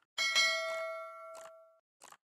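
Notification-bell sound effect: a bright bell ding struck just after a faint click, ringing out and fading away over about a second and a half.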